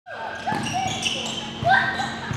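A basketball bouncing on a hardwood gym floor, a few knocks about half a second apart, with short high sneaker squeaks in an echoing gym.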